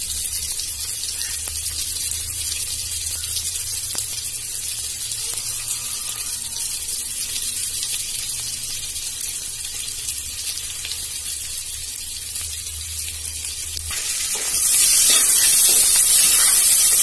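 Chopped onion, garlic and ginger sizzling in hot ghee in an aluminium pressure cooker: a steady frying hiss. It grows louder near the end as the mixture is stirred with a spoon.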